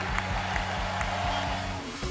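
Background music with a steady low beat under faint crowd applause. The beat drops out briefly near the end.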